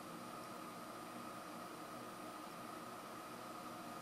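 Faint steady hiss of room tone with a faint thin steady tone; nothing happens.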